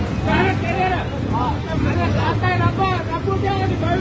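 Men's voices talking over one another, with a steady low hum of road traffic engines underneath.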